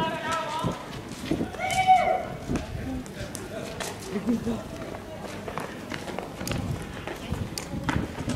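Men's voices shouting short calls, loudest near the start and about two seconds in, over scattered sharp knocks and footsteps on the pavement.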